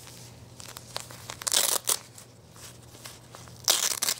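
Velcro fastener tabs on a small fabric dog diaper being peeled open, giving two short tearing rasps, one about a second and a half in and one near the end, with soft fabric rustling between them.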